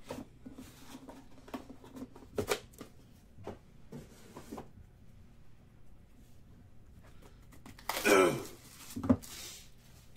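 Handling of cardboard trading-card boxes on a table: scattered light taps and knocks as a box lid is closed and boxes are stacked and set down. About eight seconds in there is a louder sliding rustle, then a single knock about a second later.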